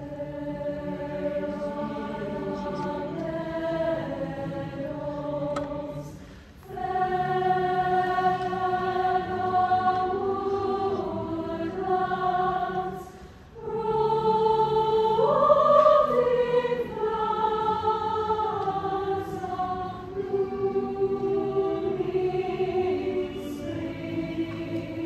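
Mixed high school choir singing sustained chords in long phrases. Two short breaks fall about a quarter and halfway through, and the loudest swell comes just after the second, the top voices rising.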